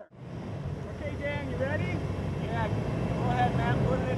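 Steady low rumble of a vehicle engine running at idle, with faint voices talking over it.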